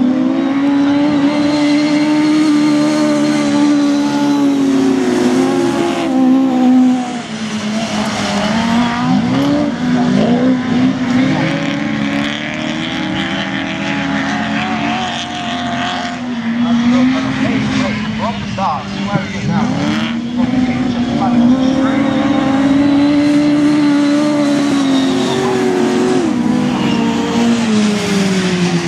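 Autograss race car engines revving hard as several cars lap a dirt oval, the pitch climbing and dropping again and again with gear changes and corners, more than one car heard at once.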